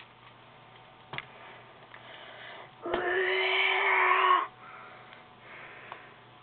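Light-up Heatblast toy figure playing an electronic sound effect: a click about a second in, then about three seconds in a short, steady buzzing tone with a rougher sound over it. It lasts about a second and a half and cuts off suddenly.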